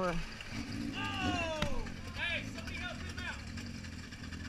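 Motorcycle engines idling steadily, with people's voices calling out over them and a single sharp click about one and a half seconds in.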